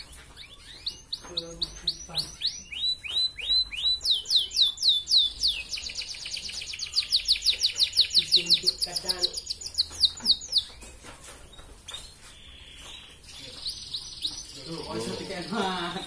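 Red canary singing: a run of quick downward-sweeping whistled notes that speeds up into a fast, loud rolling trill, then breaks off a few seconds before the end.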